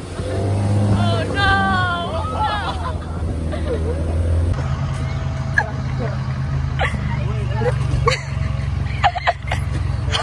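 Voices over a steady low motor hum from the boat. About halfway in this gives way to an SUV's engine idling steadily, with people talking and a few sharp knocks.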